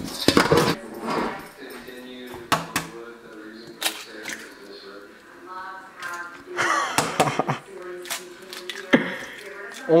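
A stainless steel bowl clattering and knocking against a stainless steel sink, a string of sharp knocks at irregular intervals.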